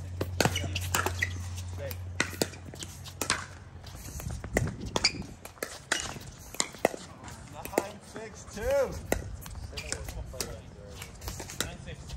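Pickleball rally at the net: paddles hitting the hard plastic ball back and forth, sharp pops at irregular intervals of about half a second to a second.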